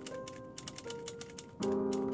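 A fast, irregular run of typewriter-style key clicks, a typing sound effect, over lofi background music with soft sustained keyboard chords. The chords swell louder again near the end.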